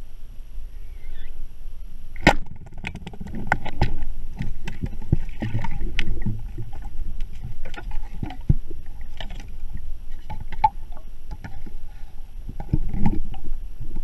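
Underwater noise picked up by a spearfisher's camera: irregular sharp clicks and knocks, the loudest about two seconds in, over a low rumble of water moving around the camera.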